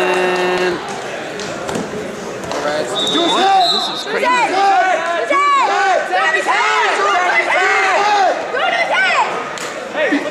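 Overlapping shouting voices of coaches and spectators echoing in a large gymnasium during a wrestling bout. A short buzzer-like tone sounds at the very start, and a brief high whistle-like tone sounds about three seconds in.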